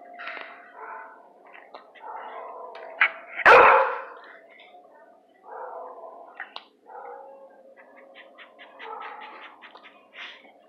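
A dog barks once, loud and sharp, about three and a half seconds in, with quieter intermittent sounds before and after it.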